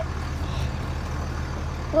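Vehicle engine idling: a steady low hum.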